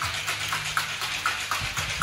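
Metal cocktail shaker being shaken hard, its contents rattling against the walls in a steady rhythm of about three strokes a second.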